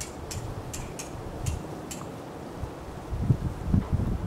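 Wind blowing across the microphone, with a heavy low rumbling gust about three seconds in. Faint, short, high ticks repeat a couple of times a second over the first two seconds, then fade.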